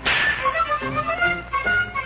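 Cartoon background music with violin and other instruments playing short scattered notes. It opens with a sudden sharp swish-like hit that fades away within about half a second.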